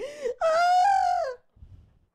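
A woman's short intake of breath, then a loud, drawn-out wailing 'ahh' about a second long that sags in pitch at the end: a mock moan acting out a miserable dog being made to walk on the leash.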